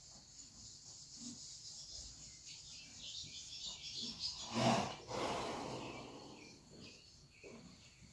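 A horse snorting: one loud blow out through the nostrils about halfway through, followed by a breathy rush of air that fades over a second or so.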